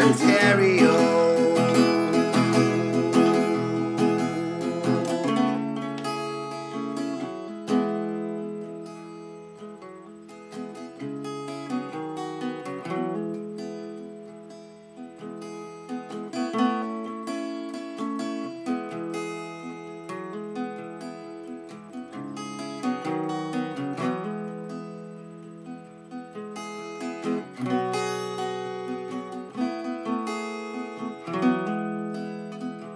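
Steel-string acoustic guitar with a capo, strummed in a folk song in the key of E, with no singing. A loud ringing chord at the start fades over the first few seconds, then steady rhythmic strumming follows, with chord changes every few seconds.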